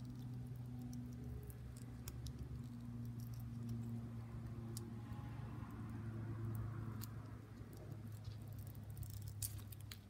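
Faint rustling and small clicks of fingers working at the base of a zebra haworthia, pulling an offset loose from the plant, over a steady low hum.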